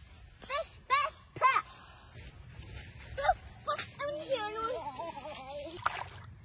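Children's voices: a few short, high exclamations, then a longer wavering call, with no clear words. A splash of a fish going into the water comes near the end.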